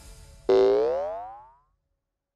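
Cartoon 'boing' sound effect: a single springy tone that starts suddenly about half a second in, rises in pitch and fades out within about a second.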